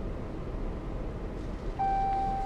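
Steady low in-cabin rumble of a 2015 Jeep Cherokee rolling slowly. Near the end a single steady chime tone sounds: the ParkSense park-assist ding that signals a parking space has been found.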